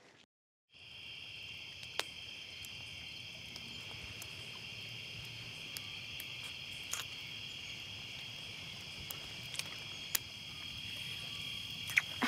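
Steady chirring of crickets at night, starting just under a second in, with a few sharp crackles from a wood campfire.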